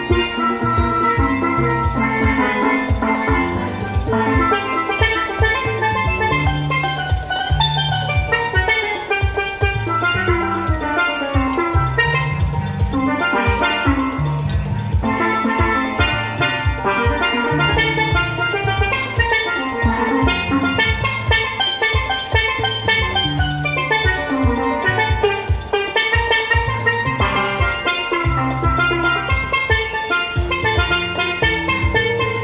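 Steelpan played live, a quick melody of short ringing notes over a steady drum beat with bass.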